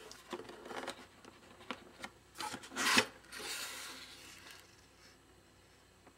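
Cardboard box and plastic wrap of the packaging being handled: light clicks and rubbing, with a louder scrape between two and three seconds in, then a softer stretch of rubbing.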